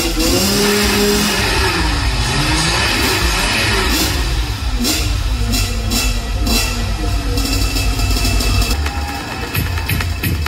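Loud show music over motorcycle engines being revved up and down repeatedly.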